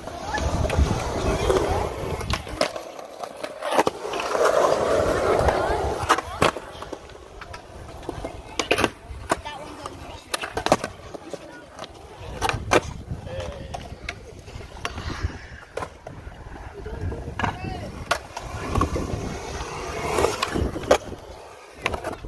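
Urethane skateboard wheels rolling over concrete skatepark surfaces, the rolling noise swelling and easing as the rider carves. Sharp clacks of the board hitting the concrete come through it again and again.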